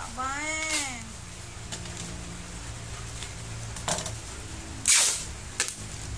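A baby's short sing-song vocal sound, rising then falling in pitch, right at the start. Then bubble wrap crinkling and rustling as a jar is wrapped, with small clicks and one loud crackle about five seconds in.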